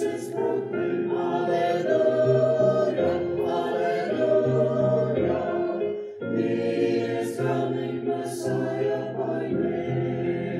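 Mixed church choir of men's and women's voices singing in harmony, with a brief break between phrases about six seconds in.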